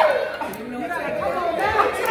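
Speech only: voices talking over one another, with no other sound standing out.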